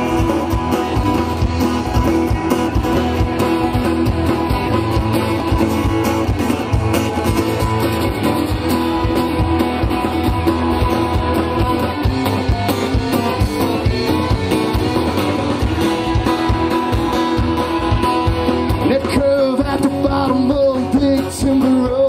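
Live red-dirt country-rock band playing an instrumental break: electric guitars, acoustic guitar, fiddle, bass and drums, with bending lead notes near the end.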